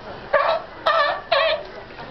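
A seal barking: three short, high barks about half a second apart.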